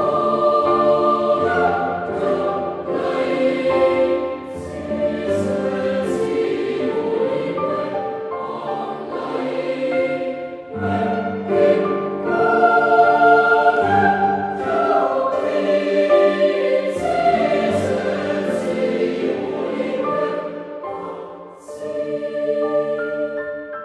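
Boys' choir singing a traditional folk song in several voice parts in harmony, with a short break between phrases about eleven seconds in and a phrase trailing off near the end.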